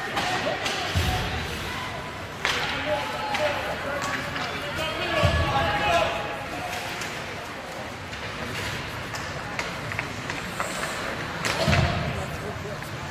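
Ice hockey rink during play: spectators chattering, with a few sudden heavy thuds of bodies and the puck against the boards and glass, the loudest about five seconds in and near the end.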